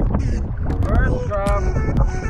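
Wind rumbling hard on the microphone over choppy sea, with background music carrying a steady beat and a short melodic line.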